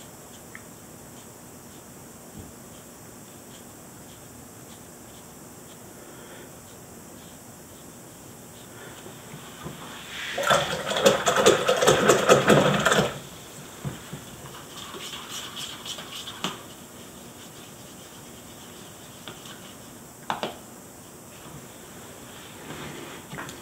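Quiet room tone, then about ten seconds in a loud burst of rattling and scraping lasting about three seconds as small objects are handled off-camera. Lighter clatter follows, and a single click comes near the end.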